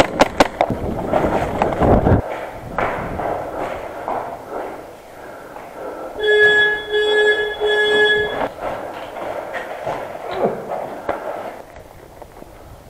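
Airsoft game sounds: a few sharp snaps at the very start, followed by the rustle and footsteps of a player on the move. About six seconds in, a steady pitched electronic tone sounds three times in a row.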